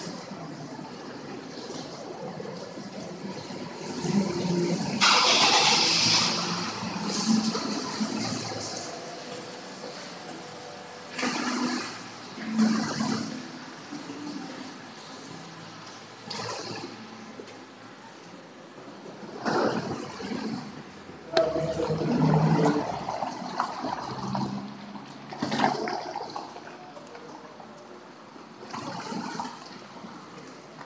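Water rushing and splashing as a Honda Fit hatchback rolls out across wet pavement, with several louder surges of splashing noise over a steady background.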